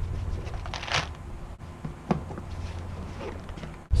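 Fabric backpack being handled and opened: a few short rustles and knocks over a low rumble of wind on the microphone.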